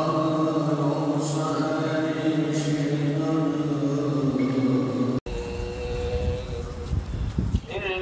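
A man's voice chanting in long, steadily held notes. About five seconds in it cuts off abruptly and gives way to a low rumble of wind on the microphone. Just before the end, a man's voice starts chanting again in a wavering, ornamented melody.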